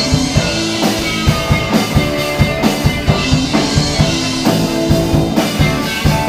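A band playing an upbeat pop-rock song: a steady drum kit beat with electric guitars.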